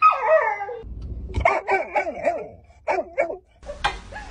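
Yellow Labrador vocalizing: a loud whining call that slides down in pitch, then a run of shorter calls that bend up and down, and another brief pair about three seconds in.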